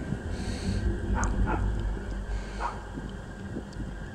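Low rumble of wind on the microphone, with a few short faint barks of a distant dog a little over a second in and again near the middle.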